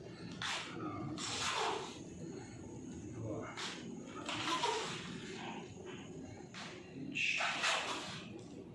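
A karate practitioner moving in Sanchin stance: a series of about six hissing rushes, some brief and sharp, some longer, from his movement and breath.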